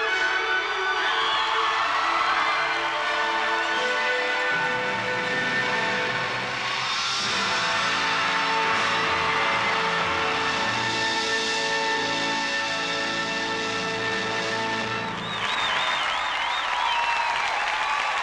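Figure-skating program music playing, then ending about three-quarters of the way through as the arena crowd breaks into loud applause and cheering with whistles.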